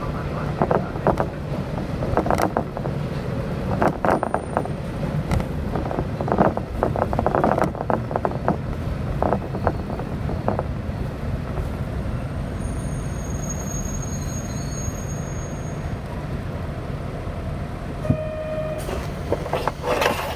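Inside a diesel railcar rolling slowly through a station: steady running rumble with a run of sharp clacks as the wheels cross rail joints and points, fading after about ten seconds. A faint high squeal follows for a few seconds, and a short beep sounds near the end.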